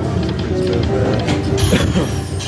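Buffalo Gold slot machine playing its electronic spin tune of short steady notes while the reels spin, over casino background din.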